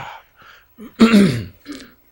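A man's short, breathy non-speech vocal sounds: a few quick bursts, the loudest about a second in with a falling pitch, then a smaller one near the end.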